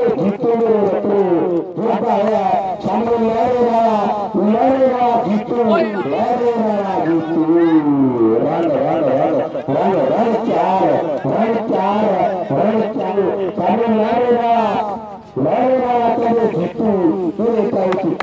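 A man speaking continuously in an excited, rapid run of live cricket commentary.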